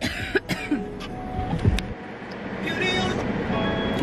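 A woman with a cold coughing and clearing her throat in a car cabin, over steady car noise that grows a little louder in the second half.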